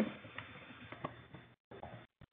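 Faint room noise with a couple of faint clicks of a computer mouse. The sound drops out completely for a moment near the end.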